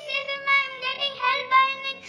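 A young girl laughing in a high-pitched voice, in a string of pulses about three a second.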